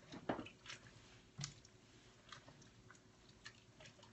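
Faint soft clicks and wet squishes of a spatula stirring a thick, moist mixture of quinoa, sausage, cranberries and walnuts in a pot, with a few sharper taps in the first second and a half.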